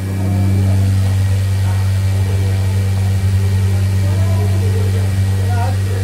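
A loud, steady low machine hum with no change in pitch. Voices talk faintly underneath.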